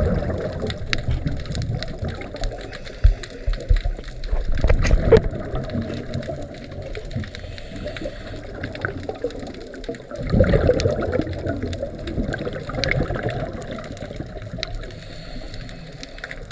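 Scuba regulator breathing underwater: exhaled air bubbles gurgling and rushing in surges a few seconds apart, heard muffled through the water.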